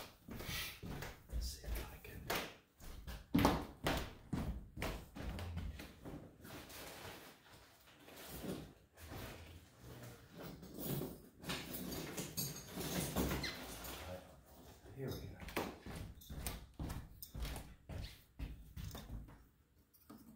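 Irregular knocks, taps and clatter of hand tools and small objects being picked up and set down.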